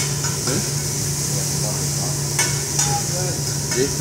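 Hibachi grill sizzling steadily over a low steady hum, with a few sharp clicks of utensils on plates.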